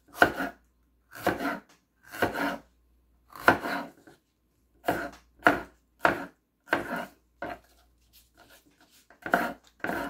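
Kitchen knife slicing a red bell pepper on a wooden cutting board: a string of separate cuts, each ending in a knock of the blade on the board, roughly one a second, with a few fainter cuts near the end.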